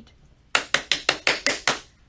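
A person clapping their hands rapidly, about eight quick claps in just over a second.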